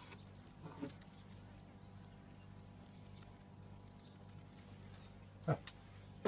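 Faint high-pitched chirping in two short runs: a few chirps about a second in, then a quick series of about ten chirps around the middle.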